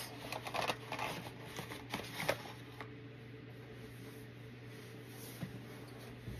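Cardboard box and packaging being handled: rustling with a few light knocks and clicks in the first two seconds or so, then quieter handling.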